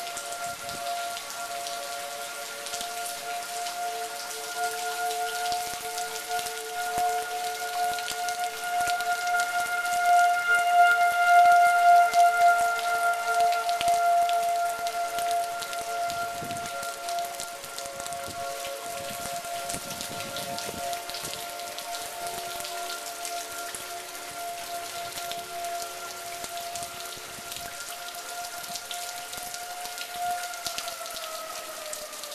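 Outdoor tornado warning sirens sounding a long steady wail, more than one tone held together, swelling louder around the middle as they sweep round, then starting to fall in pitch right at the end. Rain falls throughout.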